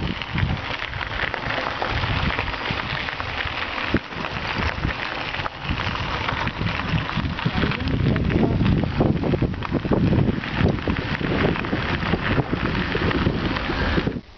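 Wind rushing over the microphone of a camera riding on a moving mountain bike, with a dense crackle of tyres rolling over a gravel track.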